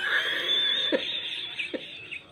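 Breathy laughter with a couple of short voiced catches, dying away near the end.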